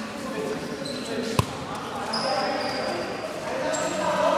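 Futsal game in a large indoor hall: a futsal ball struck once with a sharp thud about a second and a half in, short high squeaks of shoes on the court floor, and players' voices in the background.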